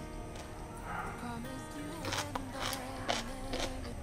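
Soft background music with steady held notes, and in the second half a few short crisp crunches about half a second apart: chewing a mouthful of stir-fried winged bean that is still crisp.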